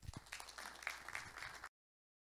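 Faint audience applause, a scatter of hand claps, which cuts off abruptly near the end into dead silence.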